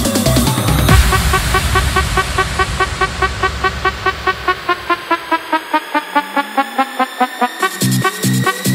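Vietnamese electronic dance remix in a build-up: the kick and bass fall away after about a second, leaving quick evenly repeating synth notes under a rising sweep. The heavy beat drops back in at the very end.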